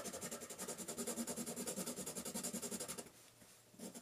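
Colorless blender pencil rubbed firmly back and forth over layered colored pencil on paper: faint, scratchy strokes, several a second. The strokes break off for most of a second near the end, then start again.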